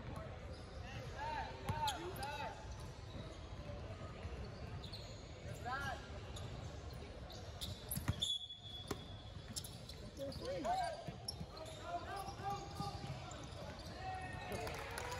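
Basketball bouncing on a hardwood gym floor, with players' and spectators' voices echoing through the hall. A short, high, steady whistle sounds about eight seconds in.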